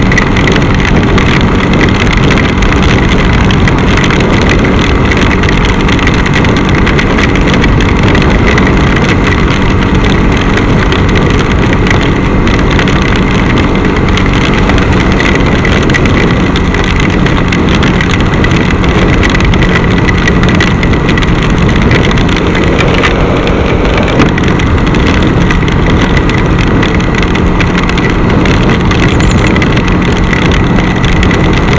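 Bajaj Pulsar NS200 motorcycle engine running steadily at cruising speed, mixed with loud, even wind and wet-road rush.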